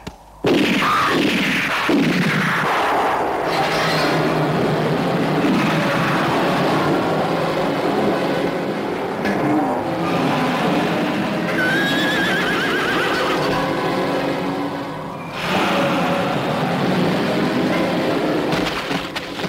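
Horses neighing and whinnying amid a loud, chaotic din that starts suddenly about half a second in, with one long wavering whinny near the middle. The din dips briefly a few seconds before the end, then returns.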